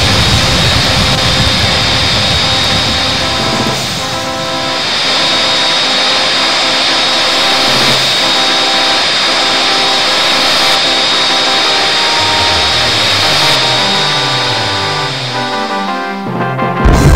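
Music over a steady, jet-like rushing engine sound of animated X-wing starfighters in flight. A deep rumble in the first few seconds gives way to the music's notes, and a run of descending low notes comes near the end.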